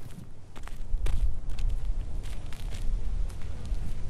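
Footsteps on dry, bare dirt ground at walking pace, a string of light irregular steps over a low rumble.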